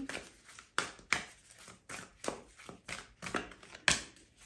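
Tarot cards being shuffled by hand, a string of about seven short, sharp card slaps at uneven intervals.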